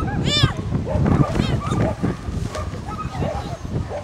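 Small dog barking in sharp, high-pitched yaps while running an agility course, with a person calling out at the same time.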